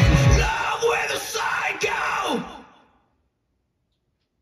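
The rock song's music with its heavy beat cuts off about half a second in, then a man yells for about two seconds, his voice dropping in pitch at the end.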